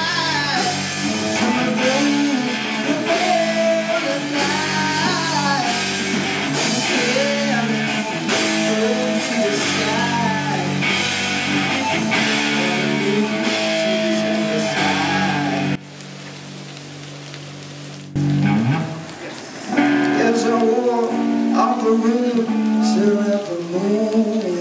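Live hard rock from a band playing loud: electric guitar, bass guitar and drum kit through stage amplifiers. About two-thirds in the band cuts out suddenly, leaving a single held low note for about two seconds. A rising glide in pitch then leads back into the full band.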